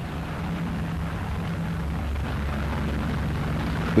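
Low, steady drone of propeller aircraft engines, slowly growing louder.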